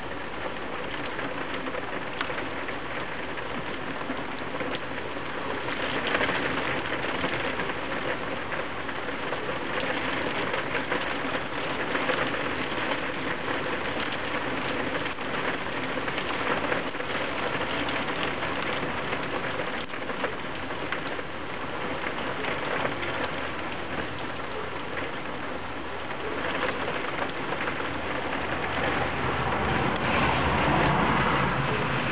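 Heavy rain, a dense patter of drops on window glass and a flooded driveway, swelling louder a few times. Near the end a passing vehicle begins to come up under the rain.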